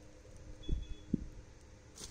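Two soft, low thumps a little under half a second apart over a quiet background: handling noise.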